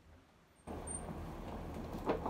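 About half a second of near silence, then steady low background hum and noise in a small room, with no distinct event.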